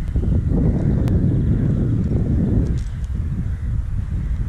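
Wind buffeting the microphone outdoors: a loud, uneven low rumble with a faint click about a second in.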